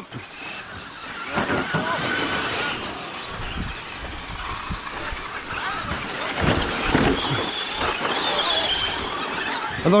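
Several Traxxas Slash electric short-course RC trucks racing on a dirt track: motors whining with a pitch that wavers up and down, over tyres scrabbling on dirt, with occasional light knocks.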